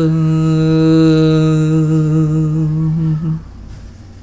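A man's singing voice holding one long, steady final note, with no accompaniment; it ends about three and a half seconds in.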